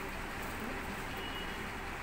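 Steady background noise with no distinct events, and a faint, brief high tone about one and a half seconds in.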